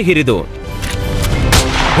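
A broadcast transition sound effect: a noisy whoosh that swells for about a second and a half and ends in a hit, as the picture cuts.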